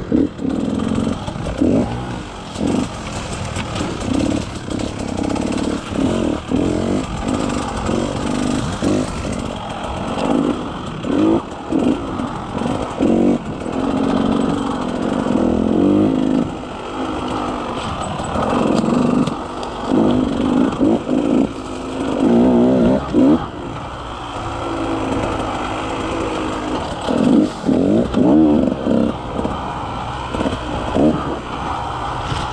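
KTM 150 XCW single-cylinder two-stroke dirt bike engine, heard from the rider's seat, revving up and dropping back over and over as the throttle is worked on and off along a rough trail. Its surges come every second or two, with longer pulls in between.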